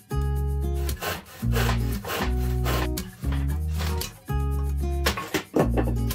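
Background music in short held notes, mixed with repeated rasping strokes of a saw cutting through wood.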